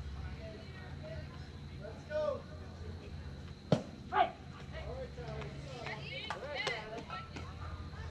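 Scattered voices of youth baseball players and spectators. About four seconds in there is one sharp knock as the batter swings at the pitch, followed at once by a short shout.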